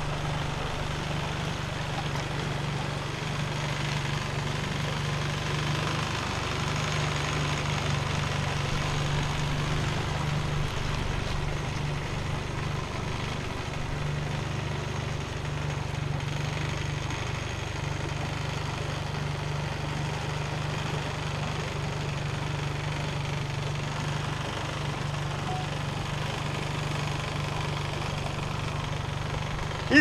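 Outboard motor on an inflatable dinghy running steadily, a constant low hum.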